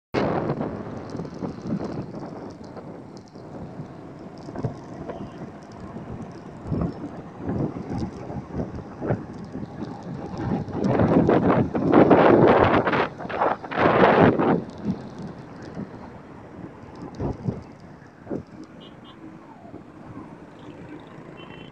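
Wind buffeting a phone microphone on a vehicle moving through road traffic, an uneven rushing noise that swells loudest from about eleven to fourteen seconds in and then eases off.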